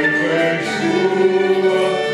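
A small mixed vocal group, a woman and two men, singing together through microphones, accompanied by flute and violin.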